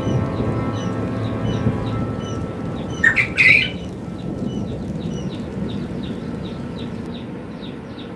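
Young poultry chicks in brooder cages peeping in a steady run of short, high chirps, several a second, with a louder burst of calls about three seconds in, over a low steady background noise.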